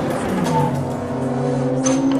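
Experimental musique-concrète soundscape: several sustained low drone tones layered together, with one pitch sliding downward about half a second in and a sharp click near the end. The drones have an engine-like quality.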